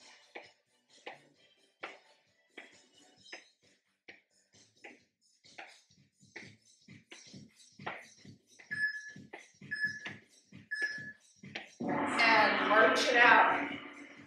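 Sneakered footfalls on an exercise mat during alternating high knees, soft thumps about two to three a second. Three short beeps a second apart come near the end, then a louder voice-like sound.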